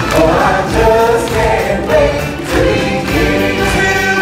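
Loud live stage-show music: a choir of voices singing with musical accompaniment, led by a singer on a microphone.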